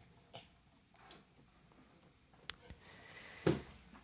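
Faint handling noises as a hollow-body guitar is lifted and its strap is put over the player's head: a few soft rustles, a sharp click about two and a half seconds in, and a louder short knock about three and a half seconds in.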